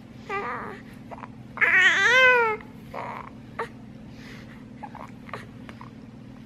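Newborn baby fussing while being swaddled: a short squeak, then one louder wavering cry of about a second starting a second and a half in, followed by a few small whimpers. Soft rustles and clicks of the muslin swaddle blanket being folded around her.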